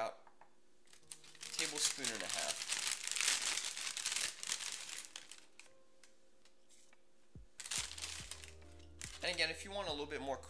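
Plastic bag of oats crinkling as it is handled and oats are scooped out, a rustle lasting about three seconds, followed by a shorter rustle a few seconds later.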